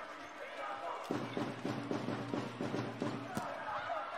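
Indoor volleyball arena crowd murmuring, with a rhythmic beat from the stands at about four beats a second starting about a second in. A single sharp smack, typical of a ball being struck, comes a little past three seconds in.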